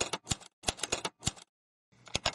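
Typewriter keys striking, about six sharp clacks in quick succession as letters are typed, stopping about a second and a half in.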